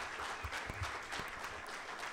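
An audience applauding: a steady patter of many hand claps.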